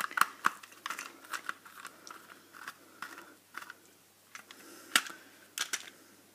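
Irregular plastic clicks and taps from an Xbox 360 controller's shell being pried apart by hand into its top, bottom and middle pieces, its screws already out. The loudest clicks come near the start and about five seconds in.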